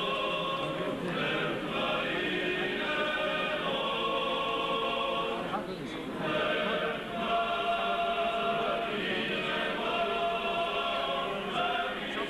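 A church choir sings an Orthodox chant in several voice parts, holding long chords that change from one to the next.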